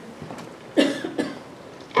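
A person coughing: two short coughs close together about a second in, the first the louder, with quiet room tone around them.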